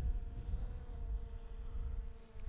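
A distant quadcopter drone's propellers make a steady, faint whine over a low wind rumble on the microphone. The pilot takes it for another person's Mavic-like drone rather than his own DJI Mini 2, which is at maximum altitude.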